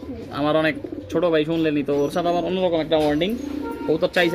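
Domestic pigeons cooing, several drawn-out coos one after another.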